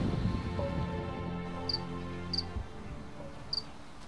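Soft background music fading out, with a cricket chirping three times, short and high.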